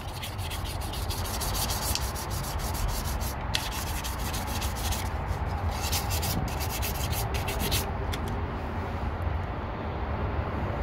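Sandpaper rubbed in quick back-and-forth strokes over the rusty grooves of a ribbed belt pulley, cleaning the rust off. The scraping stops about eight seconds in, with a short pause near the middle.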